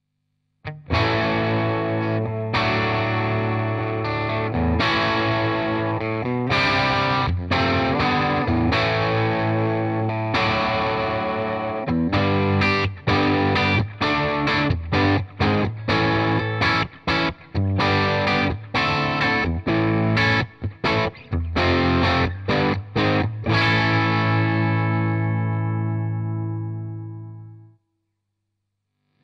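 Squier Contemporary Telecaster with two ceramic humbuckers, played through a Fender Bassbreaker 30R amp with reverb, playing an overdriven rock riff of chords. From about halfway it turns into short chopped stabs with gaps between them, and it ends on a chord that rings out and fades.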